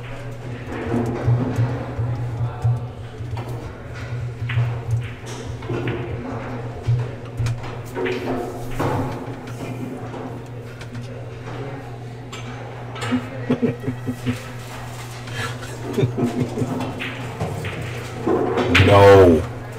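Indistinct background talk and music over a steady low hum, with a few faint clicks.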